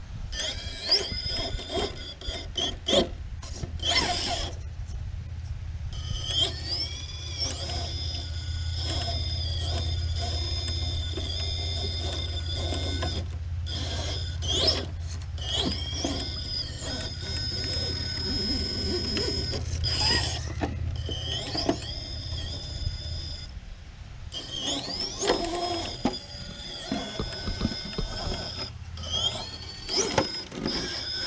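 RC rock crawler's brushless motor and Stealth X transmission whining in short bursts, the pitch gliding up each time throttle is applied, while the tyres and chassis knock and scrape on the rocks. A low rumble runs under it through much of the middle.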